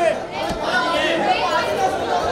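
Overlapping chatter of several voices in a crowded hall, with a single short click about half a second in.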